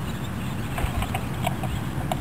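Underwater noise picked up by a submerged camera: a steady low rumble with short, irregular clicks scattered through it.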